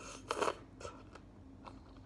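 Close-up biting into a pineapple spear: one short bite about half a second in, the loudest sound, followed by a few soft chewing clicks.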